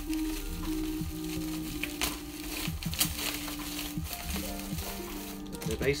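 Plastic bubble wrap crinkling and rustling as it is pulled off wrapped items by hand, with a couple of sharper crackles, over soft background music of held notes.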